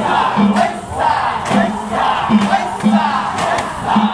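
A crowd of danjiri festival participants shouting together in short, repeated calls, with festival music behind.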